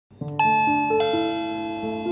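Gentle background music of bell-like keyboard notes struck one at a time and left to ring, starting a moment in.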